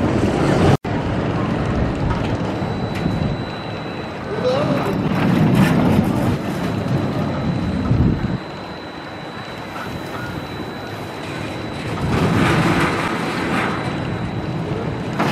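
Spinning roller coaster cars rolling along a steel track, a steady rumble with wind on the microphone. The rumble drops off suddenly about eight seconds in and swells again near the end.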